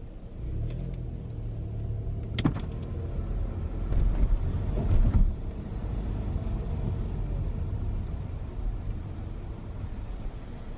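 Car rolling slowly at low speed, heard from inside the cabin: a steady low engine and road rumble, with a sharp click about two and a half seconds in and a few louder knocks around four to five seconds in.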